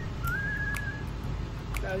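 A person whistling a few short, clear notes, one of them held for most of a second with a slight rise at its start.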